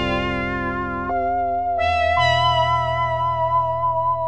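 Full Bucket FB-3200 software synthesizer, an emulation of the 1978 Korg PS-3200 polyphonic synth, playing its "Dreamscape" pad preset. It holds sustained chords that change a few times, with a new bass note coming in about two seconds in.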